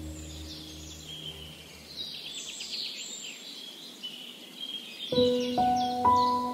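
Songbirds chirping, with a quick trill a little past two seconds in, over soft piano music. The piano's held notes fade away in the first second or so, and a new piano chord comes in sharply about five seconds in.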